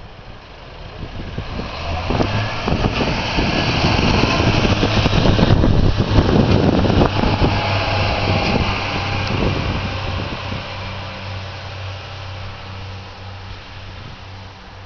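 Northern Class 142 Pacer diesel multiple unit passing: the wheel-on-rail running noise and clatter build up, are loudest around the middle as the cars go by, then fade as it draws away. A steady low drone from its underfloor diesel engines carries on to the end.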